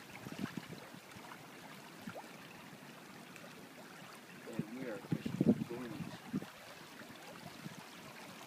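Small stream flowing with a steady low rush of water, and a person's indistinct voice briefly around the middle.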